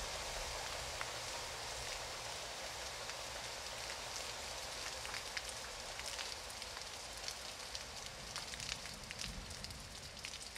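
Car-wash water splashing and running off across wet pavement: a steady hiss with scattered crackling drips and spatters that become busier through the second half.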